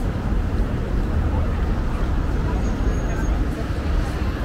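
Steady city street ambience dominated by a continuous low rumble of road traffic, with faint background voices.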